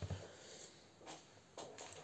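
Near silence: quiet room tone, with a few faint, brief soft noises.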